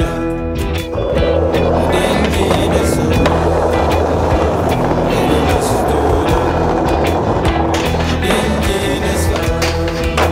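Skateboard wheels rolling over a tiled pavement: a steady rough rumble that sets in about a second in and fades near the end, under music.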